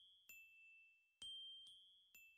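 Faint, high bell-like chime notes, each struck and left ringing as it fades, in a repeating pattern: a lower note, then two higher notes about half a second apart.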